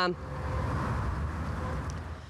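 Outdoor street ambience: a steady low rumble of road traffic, fading out near the end.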